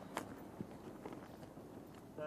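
A horse's hooves stepping on the ground, faint: a sharp knock just after the start and a softer one about half a second later, over a low background hiss.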